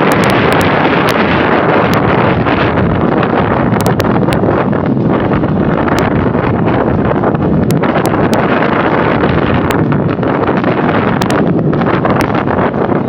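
Wind buffeting the microphone of a handlebar-mounted camera on a moving bicycle, a loud, steady rumble with a few sharp ticks scattered through it.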